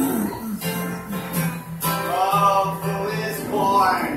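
Acoustic guitar strummed, with a man's voice singing over it in places.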